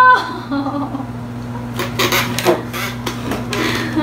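Electric hair clipper buzzing steadily, with a few sharp knocks and rattles of handling between about two and three and a half seconds in.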